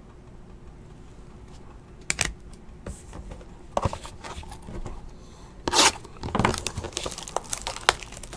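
Plastic shrink wrap on a trading-card box crinkling and tearing as hands work at it, in short irregular rustles, the loudest about six seconds in. A sharp click comes about two seconds in, after a quiet start.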